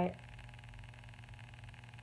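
A woman's voice finishing a word at the very start, then a pause with only quiet room tone and a steady low hum.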